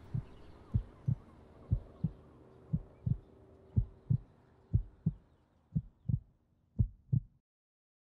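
A slow heartbeat, each beat a double thump, about one a second, over a faint hum and hiss that fade away; the beats stop suddenly near the end.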